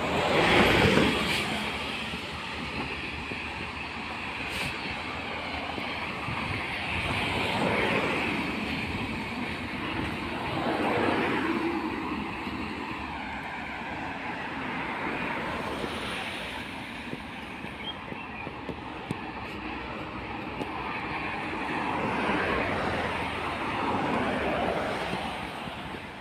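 Road traffic: a series of vehicles passing one after another, each a swell of tyre and engine noise that rises and fades, the loudest about a second in.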